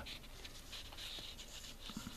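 Faint rustle of a fingertip brushing over a paper instruction sheet, strongest about a second in.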